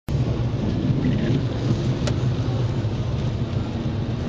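Heavy rain drumming on a car's roof and windshield, heard from inside the cabin as a steady loud rumble, with a single sharp click about two seconds in.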